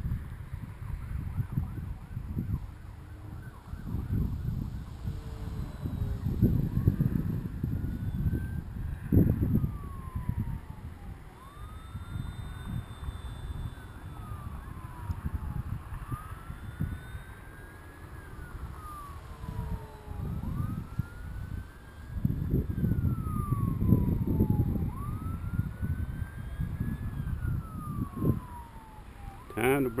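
Distant emergency-vehicle siren wailing, its pitch sweeping up and down in slow cycles of about four to five seconds, over irregular gusts of wind rumbling on the microphone.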